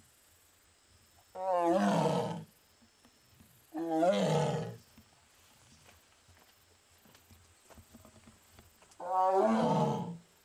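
Amur tiger giving three loud, drawn-out calls about a second each, spaced a couple of seconds apart, the last starting near the end. It is calling out after being separated from its companion tiger.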